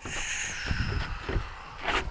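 Handling noise and sandalled footsteps on a wooden deck as a person turns in a full circle holding a drone for its compass calibration. There are soft thumps and a hiss in the first half, and a sharp click near the end.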